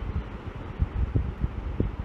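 Low rumble with a series of soft, irregular low thumps: handling noise from hands holding and shifting a wooden ruler against a glass tube close to the microphone.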